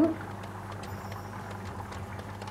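Pan of rice and water boiling on a gas hob, a steady hiss.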